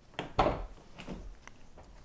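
A few light knocks and clicks, the strongest about half a second in, in a small room.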